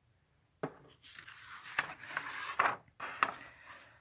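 A page of a hardcover picture book being turned by hand: paper rustling and sliding for about two seconds, starting about half a second in, with a few light taps.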